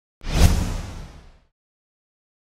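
Whoosh transition sound effect with a deep low rumble under it: it swells in sharply, peaks about half a second in and fades away over about a second.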